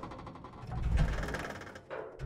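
A whoosh sound effect for an animated title card: a rushing noise that swells to a peak about a second in and then fades.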